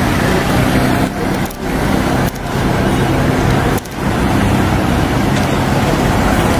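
Steady engine and road noise of a car driving along a city street, dipping briefly three times.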